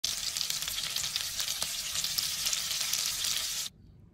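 Whole skinned bats frying in hot oil in a pan: steady sizzling with fine crackles, which stops abruptly shortly before the end.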